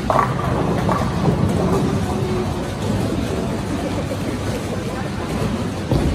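Bowling alley din: a steady low rumble of bowling balls rolling down the wooden lanes, with faint voices in the first couple of seconds.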